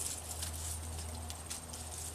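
Faint rustling and light ticks of mandevilla leaves and stems being handled as hands part the foliage, over a steady low hum.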